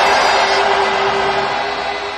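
Closing background music: a dense, hiss-like wash with one held low note, slowly fading toward the end.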